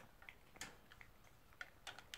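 A toy poodle chewing a small dental chew: faint, irregular crunching clicks, about six in two seconds, the sharpest a little past half a second in and just before the end.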